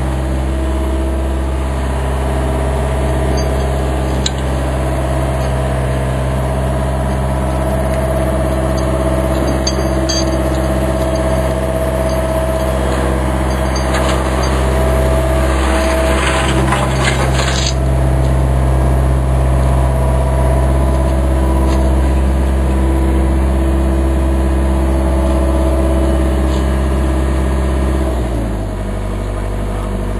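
John Deere backhoe's diesel engine running steadily at raised revs, dropping back near the end. For a few seconds past the middle, a steel bucket scrapes and clatters against the concrete block.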